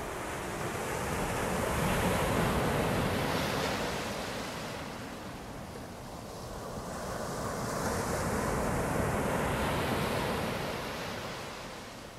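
Ocean surf: two waves rolling in and washing back, each swelling and fading over about five seconds.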